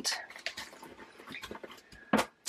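Small clear plastic bag of resin diamond-painting drills being handled: faint crinkling with scattered small clicks.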